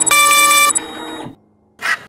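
Electronic error buzz from the kit-checking system: a loud, steady tone of a few stacked pitches lasting under a second, signalling an incomplete kit. The background music then drops away, and a short rush of noise follows near the end.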